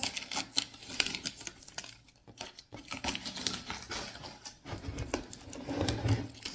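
Blue painter's tape being peeled off a painted wooden lantern base and handled: a string of irregular crackles and small clicks.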